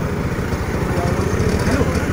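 Auto-rickshaw's small engine running steadily, with an even, rapid chugging.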